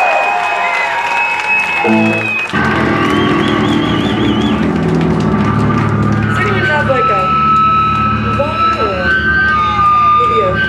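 Live electric guitar feedback and held amplified notes between songs: a high steady whine at first, then low sustained notes come in about two and a half seconds in, with a wavering high squeal above them. Crowd voices shout over it in the second half.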